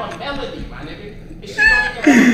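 Quieter talk, then near the end a man's loud, high-pitched squealing laugh.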